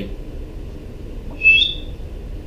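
A short, high two-note whistle about one and a half seconds in, the second note higher than the first.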